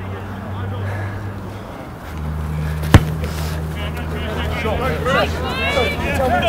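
Open-air rugby pitch sound: a steady low rumble, a single sharp knock about three seconds in, then distant players shouting to each other from about four seconds on.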